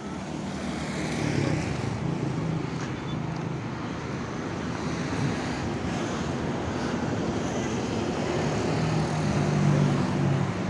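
Diesel engine of a large coach bus running close by as it pulls up and idles, over passing road traffic; the engine hum grows louder near the end.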